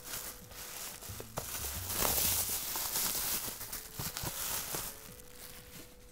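Plastic bubble wrap crinkling and rustling as it is pulled off a parcel's contents, with scattered crackles, loudest a couple of seconds in.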